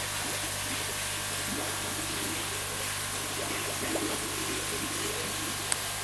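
Steady rush of running water with an even low hum beneath it, and one short click near the end.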